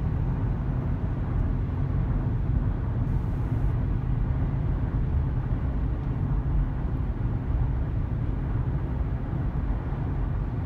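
Steady road and engine noise inside a moving car's cabin: a constant low rumble with no changes.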